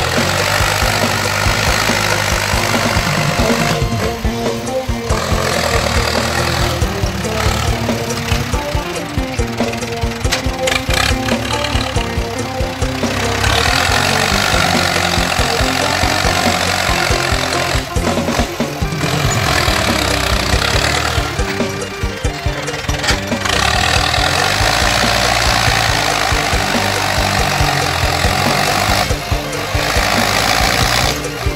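Music playing, with a Ford tractor's diesel engine running under load beneath it as the tractor pushes soil with its front blade.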